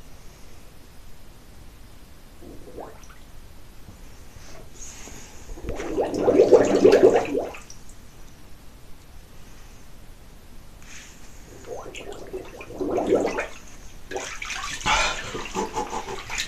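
Air bubbling up through bathwater from a person lying submerged in a tub, one loud burst of bubbling about six seconds in and a shorter one around thirteen seconds. Near the end water splashes and sloshes as he comes up out of the water.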